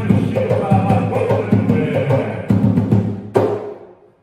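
Atabaque hand drum played in a steady rhythm under a man singing an Umbanda ponto, closing on a final sharp stroke about three and a half seconds in, after which the sound dies away.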